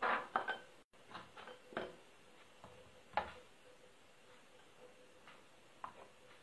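Small glass bowls and ingredients being handled on a kitchen countertop: a handful of light, irregular clinks and knocks, the loudest right at the start and about three seconds in. A faint steady hum runs underneath, and the sound cuts out completely for a moment about a second in.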